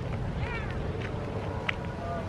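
Outdoor ambience: a steady low rumble of wind on the microphone, with faint higher calls about half a second in and one short sharp click near the end.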